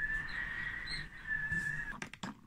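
Storm wind whistling: a steady high whistle that wavers a little in pitch and breaks off just before the end.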